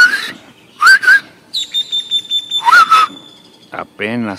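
Birds chirping: several loud, short calls that rise and fall in pitch, one at the start, a quick pair about a second in and another near three seconds, with a thin, high, steady trill running through the middle.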